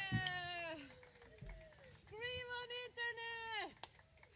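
A high voice: a long falling call dies away in the first second, then after a short pause comes a higher call or a few words, broken into short pieces.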